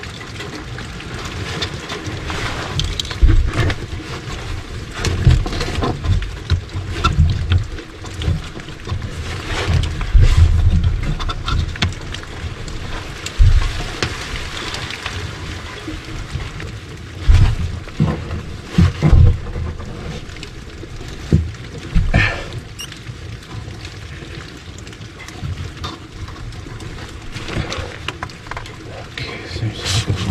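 Handling noise from hands working hose fittings and wiring on an RV water pump: irregular knocks and bumps with rustling in between.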